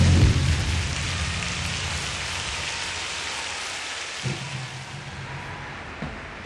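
A rock band's final struck chord dying away: cymbals and amplified guitars ringing out into a long, slowly fading wash of noise. A single low thump about four seconds in.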